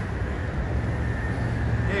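Steady low rumble of outdoor city background noise.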